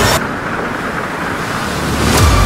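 A muffled storm sound effect, a low rumbling wash of wind and surf with the higher sounds dulled, in a gap where the music drops out just after the start.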